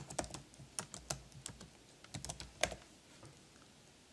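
Computer keyboard keys clicking quietly as a word is typed, a run of keystrokes that stops about three seconds in.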